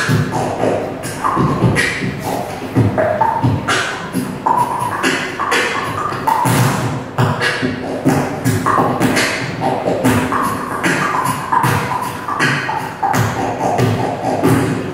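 Beatboxing into a handheld microphone: mouth-made kick-drum thumps and sharp snare-like hits in a steady, fast rhythm, with short pitched notes between the beats.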